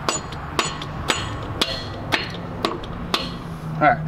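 Piston mallet striking the top of a new 7.3 Powerstroke fuel injector to seat it in its bore: seven firm taps at about two a second. Each tap gives a light metallic jingle, the sign that the injector has not yet clicked fully into place.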